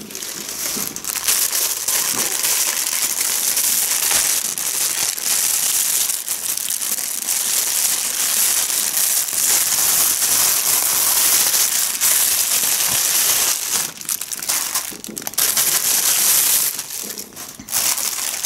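Thin plastic parcel packaging crinkling and rustling continuously as it is handled and opened by hand, with brief lulls near the end.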